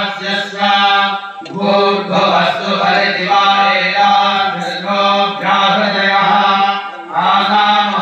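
Mantras chanted in a steady recitation, in long phrases broken by short pauses for breath about a second and a half in and again near the end.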